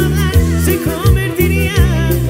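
A Latin dance band playing live: a male lead singer with wavering held notes over bass, saxophones and percussion in a steady beat.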